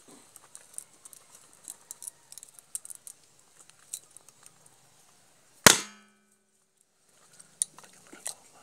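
Light rustling and small clicks of footsteps through dry leaves and palm fronds. A little past halfway comes one sharp, loud crack with a brief metallic ring, much the loudest sound.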